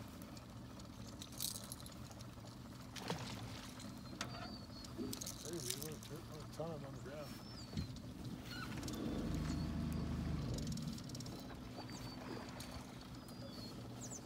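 Boat's outboard motor idling steadily, with a low rumble that swells for about two seconds in the middle. Short high chirping calls and faint voices come in over it.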